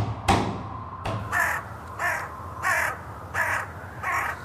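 Crow caws, four in a row about one every 0.7 s, starting about a second in, after a couple of sharp knocks at the start.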